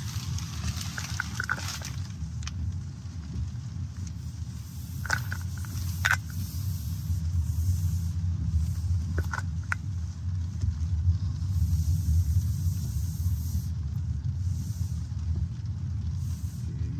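Cabin noise inside a BYD Seal electric sedan driving at low speed on a wet track: a steady low rumble of tyres and road, a little louder in the second half, with a few sharp clicks.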